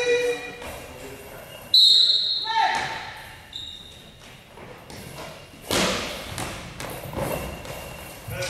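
Goalball, the ball with bells inside, striking the wooden gym floor with echoing impacts: a sudden loud one about two seconds in that rings with a bright jingle, and a second, noisier one just before six seconds.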